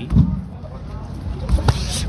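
Punches landing at close range in a boxing exchange: a dull thump just after the start, then a couple of sharp knocks about a second and a half in, over a steady low background rumble.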